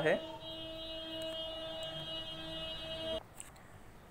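A steady electrical hum with a thin high whine above it, which cuts off suddenly about three seconds in.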